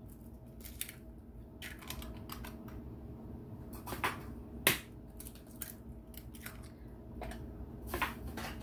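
Eggs being cracked and added to raw ground beef: a few light shell clicks and taps, the sharpest about four and a half seconds in, with small handling noises between them.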